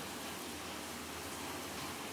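Steady, even background hiss with no distinct knocks, clicks or tones.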